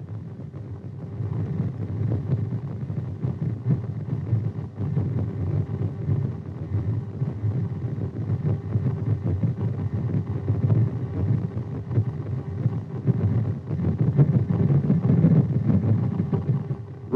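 Audio return from an AN/TPS-25 ground surveillance radar tracking men walking: the radar's Doppler signal heard as a low, fluctuating rumble with a faint steady tone above it, swelling a little near the end.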